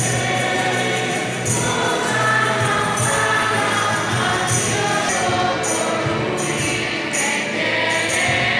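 Choir singing a hymn with instrumental accompaniment, with light percussion accents recurring about every second.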